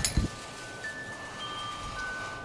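Wind chimes ringing softly, several clear tones at different pitches starting one after another and hanging on. A brief low thump just after the start.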